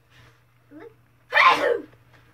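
One short, loud burst of human voice about a second and a half in, rough and noisy rather than a spoken word.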